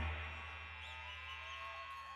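A distorted electric guitar's last chord dying away through the amplifier just after the song stops, leaving a steady amp hum, with a faint drawn-out voice in the room about halfway through.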